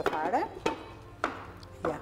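Kitchen knife chopping zucchini on a wooden cutting board: a few separate strokes, roughly half a second apart.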